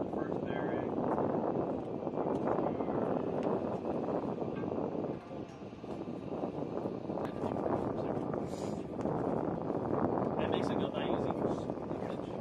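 Steady rushing outdoor background noise, with indistinct voices now and then and a few faint clicks.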